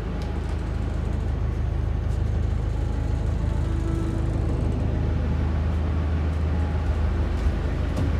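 A houseboat's onboard engine running, a steady low drone that continues evenly throughout.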